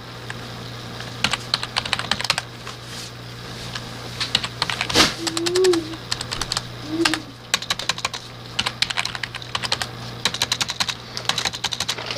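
Rummaging through a bag of plastic wrappers, cups and small toys: fast, irregular clicking and crinkling in clusters, with one sharp thump about five seconds in.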